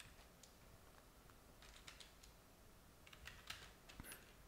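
Faint computer keyboard typing: scattered key clicks, bunched into two short bursts around the middle and near the end.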